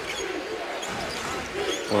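Basketball being dribbled on a hardwood court over the noise of an arena crowd.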